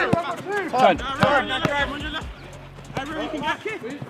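Players and touchline voices calling and shouting across an outdoor football pitch, with a few short sharp knocks among the shouts.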